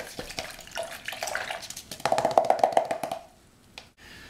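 Paintbrush being swished and tapped in a water container, a quick run of clicks that builds to a louder rattling clatter about two seconds in and stops shortly before the end.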